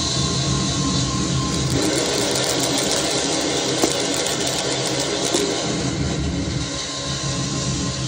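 Harsh noise from a sound source run through a DigiTech Death Metal distortion pedal into a Mantic Hivemind fuzz (a DOD Buzzbox clone): a dense, continuous distorted wall of noise with a deep buzz beneath it and a few brief crackles in the middle.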